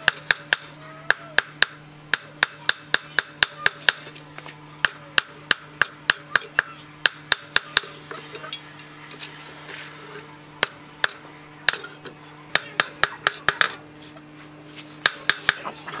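Hand hammer striking a steel knife blank, cut from a broken brake disc rotor, on a small post anvil: sharp metallic blows about two to three a second, in runs with short pauses between them.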